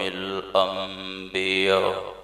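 A man's voice chanting in long, drawn-out melodic phrases, each note held and wavering. The voice stops just before the end.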